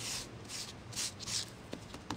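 A folded paper towel rubbed and dabbed over damp, ink-layered embossed cardstock: about four soft, hissy brushing strokes, blotting up excess ink moisture before embossing.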